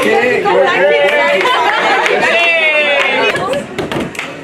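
A group of young women talking over one another in lively chatter.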